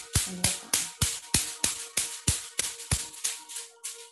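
A wooden tapping stick striking along the arm in qigong self-tapping massage: a quick, even run of sharp taps, about three and a half a second, that stops just before the end.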